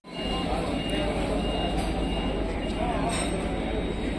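Station platform sound of a standing multiple-unit train: a steady low rumble with faint voices of people in the background.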